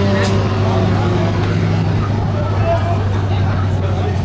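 Fiat Marea's engine idling steadily in a low, even hum, with people talking over it.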